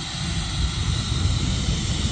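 Wind buffeting a phone microphone while riding a zip line: a rough, fluttering rumble with a steady high hiss of rushing air.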